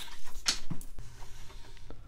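Shop scissors snipping through a strip of iron-on edge banding right at the start, then a few light clicks and taps as the strip is handled and laid along the plywood edge.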